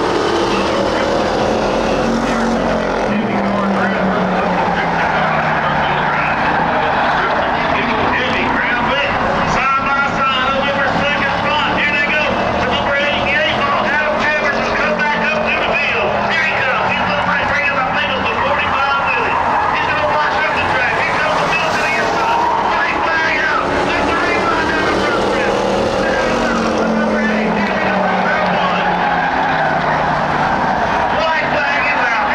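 A pack of Ford Crown Victoria stock cars racing on a dirt oval, their V8 engines running hard. The engine pitch falls in the first few seconds and climbs again near the end as the cars come off and into the corners.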